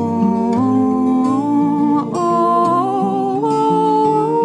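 Two acoustic guitars playing while a man and a woman sing a wordless melody in harmony, holding long notes with vibrato; the voices step up in pitch near the end.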